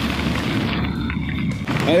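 Wind buffeting the microphone of a camera riding on a moving bicycle along a forest track: a steady, rough low rumble. A man's voice begins just before the end.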